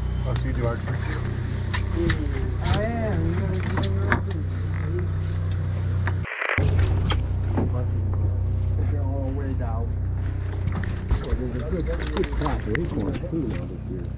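Steady low hum of a fishing boat's engine running, with voices talking indistinctly over it.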